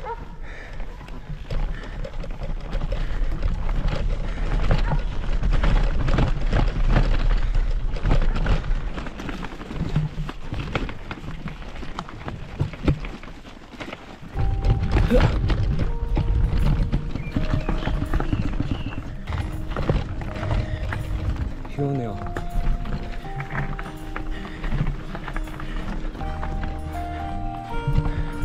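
A bicycle climbing an unpaved gravel road, its tyres crunching over loose stones amid dense, rough noise. Background music with held notes comes in about halfway through.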